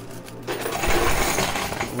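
Coin pusher paying out: a mass of quarters spills over the front ledge into the payout chute in a dense metallic clatter. It swells about half a second in and thins out near the end.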